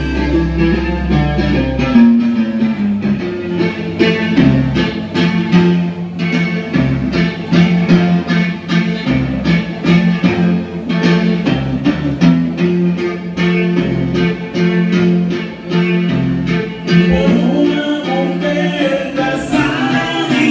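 Live band playing dance music at full volume: a drum kit keeping a steady beat under electric guitar and a bass line.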